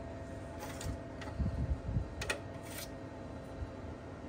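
Small clicks, light knocks and rustling from hands rummaging through small items, with a few soft low thuds near the middle, over a faint steady hum.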